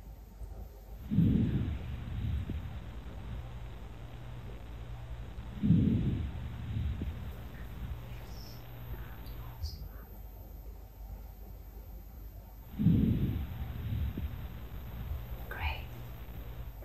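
Lung sounds heard through a stethoscope pressed to the back: three deep breaths come through as loud, low rushes a few seconds apart, over a steady low hum.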